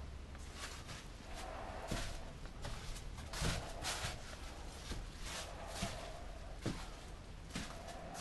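Faint, irregular soft swishes of a bristle brush being drawn across a wet epoxy coat on a surfboard, roughly one stroke every half-second to second, over a low steady hum.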